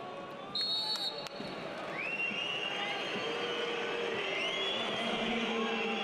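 A referee's whistle gives a short blast about half a second in, signalling half-time. Stadium crowd noise then grows louder, with many rising whistles from the fans.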